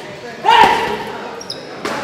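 Boxing gloves punching a hanging heavy bag: a heavy hit about half a second in that rings away, and a sharp crack just before the end.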